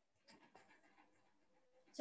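Near silence: faint room tone on an online-lecture audio line.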